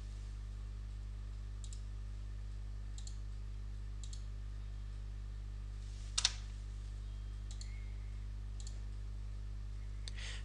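Steady low electrical hum with a few faint ticks, and one sharp click about six seconds in from the computer being operated.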